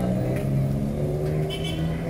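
A motor vehicle engine running steadily in street traffic, its low pitch sinking slightly.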